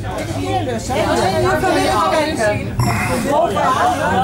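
Overlapping voices of passengers chattering in a train carriage, over a low steady hum.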